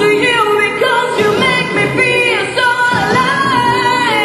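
A woman singing a song into a microphone over instrumental accompaniment, with long held notes that glide between pitches.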